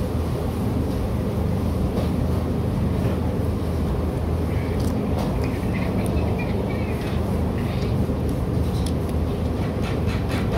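Steady low rumble of background noise, with faint distant voices and a few light clicks over it.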